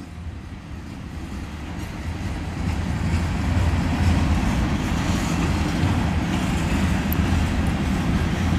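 Freight train cars rolling past: a steady rumble of steel wheels on rail, growing louder over the first few seconds and then holding.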